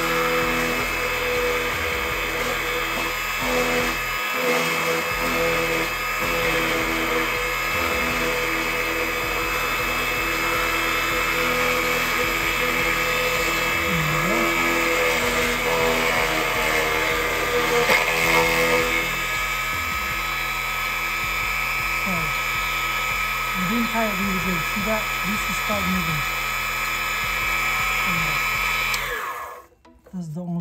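Defu 368A key cutting machine's motor and milling cutter running steadily as it cuts a Honda HON66 laser key blade, with a steady whine of several fixed tones. The motor cuts off suddenly near the end.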